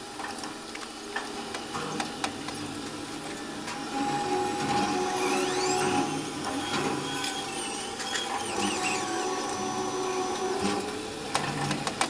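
Raimondi tower crane's electric drive motors whining as heard in the operator's cab: a high whine rises in pitch about five seconds in, holds, and falls away near the end, over a steady hum with scattered clicks.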